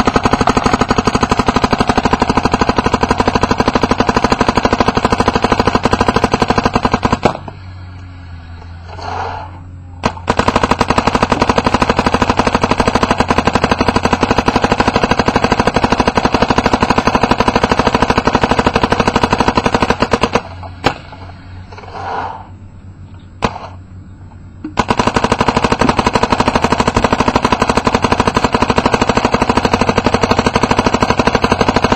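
Smart Parts NXT Shocker paintball marker firing rapid, continuous strings of shots on high-pressure air, emptying paint as fast as it will shoot for an efficiency test. The firing stops twice for a few seconds.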